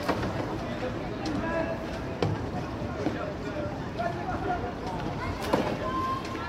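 Indistinct voices of people talking at a distance, with a steady low rumble and a few sharp knocks.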